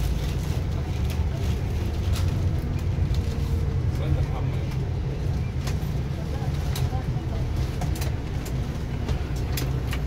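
Neoplan Tourliner coach's diesel engine running at low speed, a steady low rumble heard inside the cabin from the front seat as the coach creeps forward, with scattered short clicks and rattles.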